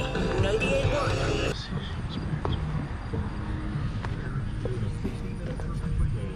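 A radio playing an advertisement, a voice over music, that cuts off abruptly about one and a half seconds in; after it, quieter outdoor background noise with a few faint clicks.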